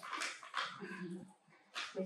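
Towel rubbing against a small body, making short rustles, with a brief low whimpering sound about a second in.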